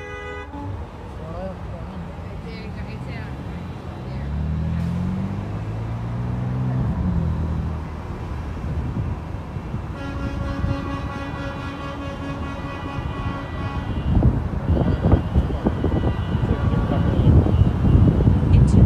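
Car horns honking in moving traffic: a short toot at the start, one horn held steady for about four seconds in the middle, and a shorter honk near the end. Between them a vehicle engine's pitch rises as it accelerates, over road noise that grows louder toward the end.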